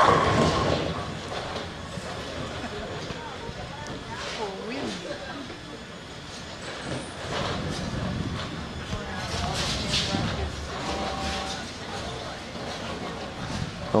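A bowling ball crashes into the pins with a sudden loud clatter that dies away over about a second. Spectators' voices and chatter follow.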